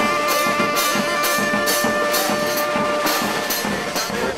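Cimarrona brass band playing: a horn note held for about three seconds over steady snare and bass-drum beats.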